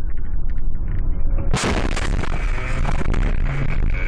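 Car interior during a head-on collision: loud rumble of the moving car, then about one and a half seconds in a sudden violent crash as the car hits an oncoming tractor and the airbag deploys, with loud crash noise running on afterwards.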